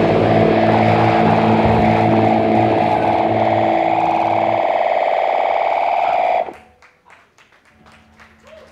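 Live hardcore punk band's distorted electric guitars and bass holding a loud ringing final chord to end a song. The low end drops out a little before the end and the ringing cuts off suddenly about six and a half seconds in, leaving a few scattered claps.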